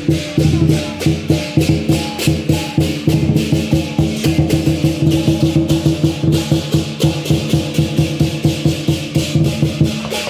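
Southern lion dance percussion band playing: a large lion drum with clashing cymbals and a gong beat out a fast, steady rhythm of several strikes a second, with ringing metal tones beneath.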